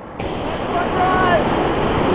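Steady rushing roar of whitewater in a big river rapid, starting suddenly a moment in, with faint shouts over it.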